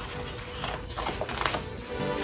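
Scissors snipping through a craft vinyl sheet in a few light clicks, under background music. Near the end, electronic music with a beat comes in.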